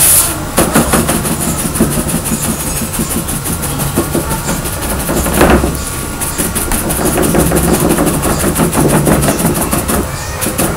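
A flat paintbrush worked quickly back and forth across a painted board, giving a dense, scratchy rubbing that lays down a streaked background texture. A steady low hum runs underneath.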